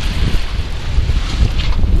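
Wind buffeting the microphone over the rush of water along the hull of a small sailboat under sail.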